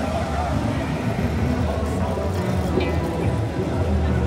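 Busy pedestrian street ambience: crowd chatter and music playing, over a steady low rumble.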